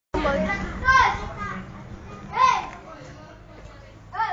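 A baby babbling: a few high-pitched wordless vocal sounds, the loudest about a second in, and another that rises and falls about two and a half seconds in.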